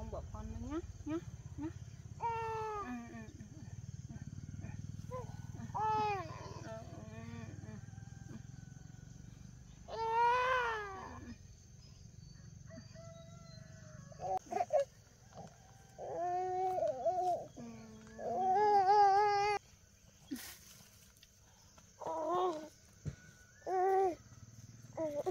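A baby crying and fussing in repeated short bouts, with two longer, wavering wails about ten seconds in and again just before twenty seconds.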